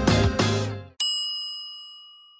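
Outro music with a steady beat fades out just before a second in. Then a single bright chime, a 'ding' sound effect, rings out and slowly dies away.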